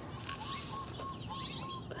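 Small birds gathering for seed, calling with a quick run of short, repeated notes, about five a second, and a brief rush of high hiss about half a second in.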